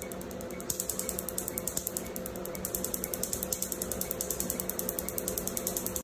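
Pen-style rotary tattoo machine running with its needle in the skin: a steady motor hum under rapid, even ticking of about ten ticks a second.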